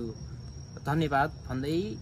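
A steady high-pitched trill of crickets runs through, under a man's voice, which speaks two short phrases about a second in and near the end.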